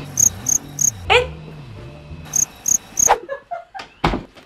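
Comedic cricket-chirping sound effect for an awkward silence: two bursts of three high chirps, the second a little past two seconds in, with a short rising whine about a second in.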